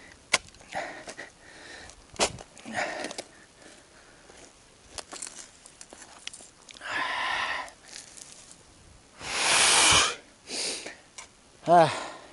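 A man breathing hard and puffing from the effort of digging, with two long heavy exhalations in the second half and a short voiced grunt near the end. A few sharp clicks sound in between.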